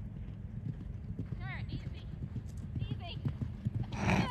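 Hoofbeats of a horse galloping on grass turf.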